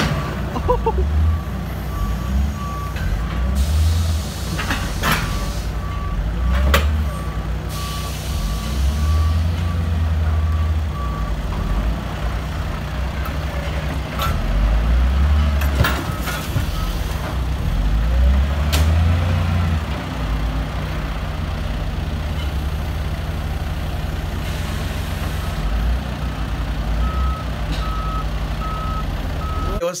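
Wheel loader's diesel engine running and revving in repeated surges as it lifts and carries a wrecked car, its reversing alarm beeping steadily for the first twelve seconds and again near the end. A few sharp metal knocks from the car on the forks.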